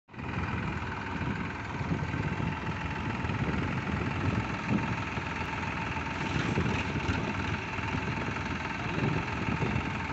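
Massey Ferguson diesel tractor engine running steadily under load while it pulls a disc bund ridger along a paddy-field bund.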